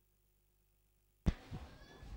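Dead silence on the audio track, then just past a second in a single sharp click as the sound cuts back in, followed by faint background noise with a brief faint tone.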